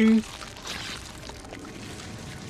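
A man's speech breaks off at the start, then a soft, steady hiss, a little stronger in the first second: a film sound effect for the giant snake.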